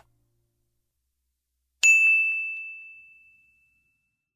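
A single bright bell-like ding from a subscribe-button animation's sound effect, about two seconds in, ringing on one clear tone and fading away over about a second and a half.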